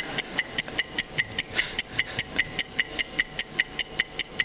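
Clock-ticking sound effect played over a hall's speakers: fast, even ticks of about five a second, counting down the teams' time to think up an answer.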